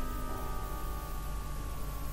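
Quiet background music of steady held tones, a sustained drone heard in a gap in the narration.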